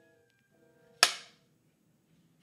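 A single sharp hand clap about a second in, dying away quickly.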